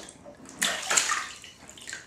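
Bathwater splashing and sloshing as a baby moves in an infant bath seat in the tub, with the loudest splashes between about half a second and a second in.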